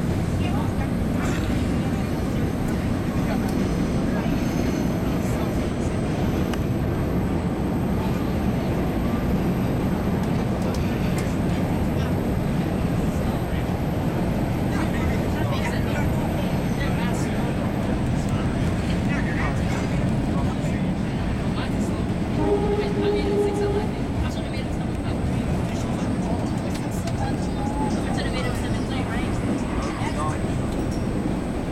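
MBTA Red Line subway car running on the rails, heard from inside the car as a loud, steady rumble. About two-thirds of the way through, a short steady tone sounds for about a second.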